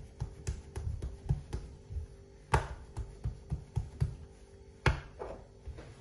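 Hands patting and pressing a ball of dough flat on a wooden cutting board: a run of soft thumps, two or three a second. Two sharper knocks on the board come about halfway through and near the end.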